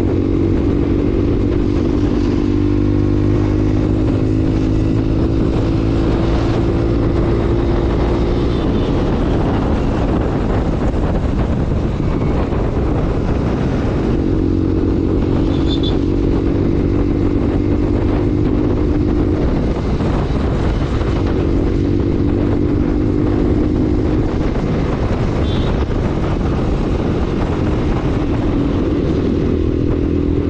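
Bajaj Pulsar 125's single-cylinder engine running under way, its pitch climbing slowly as it pulls through the gears and dropping back at each change, over a steady rush of wind and road noise.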